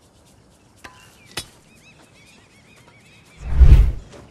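Faint high bird chirps and a couple of light clicks, then, about three and a half seconds in, a single loud heavy thud lasting about half a second.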